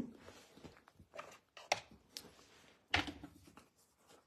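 A few quiet clicks and knocks of jars of craft supplies being handled on a tabletop, the loudest about three seconds in.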